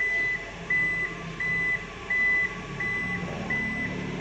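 Toyota Innova Zenix power tailgate opening, its warning buzzer giving evenly spaced short high beeps, about six in four seconds, over a low motor hum.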